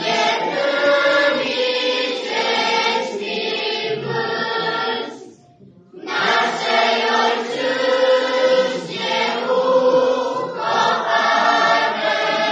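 A children's choir singing together, with a short break between phrases about halfway through.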